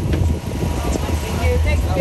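Indistinct chatter of people close by over a steady low rumble.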